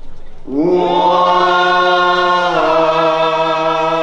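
Group of voices chanting a maulid qasida in unison in maqam rast. About half a second in they slide up into a long held note, then step down to another held note a little past halfway, with no drumming.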